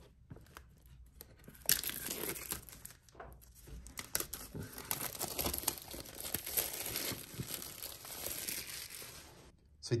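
Clear plastic shrink-wrap being torn and peeled off a cardboard box, crinkling and crackling continuously from about two seconds in until just before the end.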